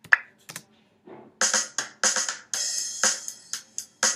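Programmed drum backing from Reason's Songstarter template playing back: a simple beat of drum hits with busy hi-hat and cymbal. Two sharp hits come in the first second, and the cymbal-heavy groove carries on from about a second and a half in.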